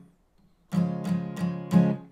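Takamine acoustic guitar strummed on a C chord shape with a capo on the first fret. After a brief silence, a quick rhythmic run of about four strums follows, the last one loudest.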